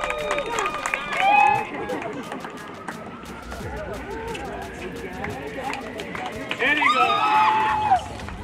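Excited voices of players and spectators celebrating a match win: high-pitched squeals and cheers over chatter, loudest about a second in and again near the end.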